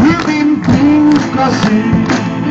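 A man singing to his own strummed acoustic guitar in a live performance.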